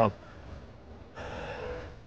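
A man's word ends, then after a pause comes a short breathy sound from a person, lasting under a second, near the end.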